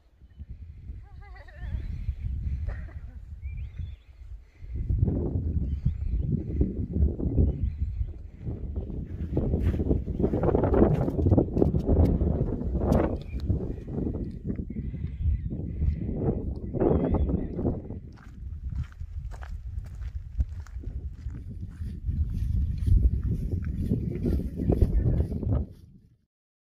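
Gusting wind buffeting the microphone, coming in waves, with a brief lull about four seconds in and stronger gusts after.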